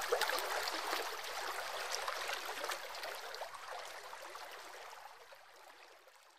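Flowing water, a steady splashing rush that fades away near the end.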